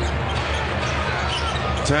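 A basketball being dribbled on a hardwood court over steady arena background noise.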